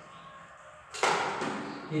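A sudden loud burst of noise about a second in, fading away over most of a second.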